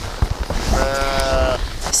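A Romanov sheep bleats once, a single steady-pitched call of under a second in the middle, over a low rumble.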